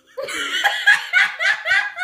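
Two women laughing hard: a loud run of quick, high-pitched bursts of laughter that starts a moment in and breaks off near the end.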